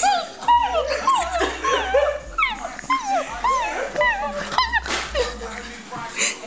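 A woman imitating a dog with a rapid run of high yips and whimpers, each rising then falling in pitch, about three a second, stopping about five seconds in.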